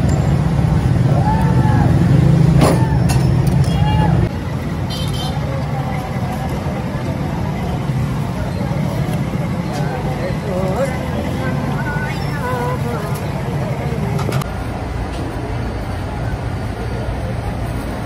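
Busy street-market ambience: indistinct background voices over a steady low rumble of traffic. The background changes abruptly twice as the scene cuts.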